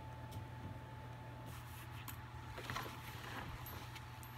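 Faint rustling and soft clicks of things being handled in a fabric bag, over a steady low hum.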